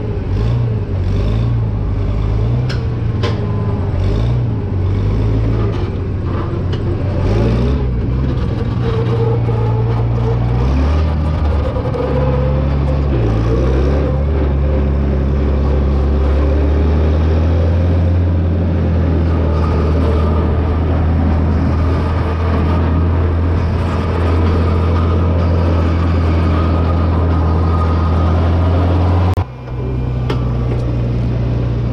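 International Farmall 656 tractor's engine running under way, its pitch shifting with throttle and speed over the first half, then holding steady. Sharp clanks and rattles come through during the first several seconds.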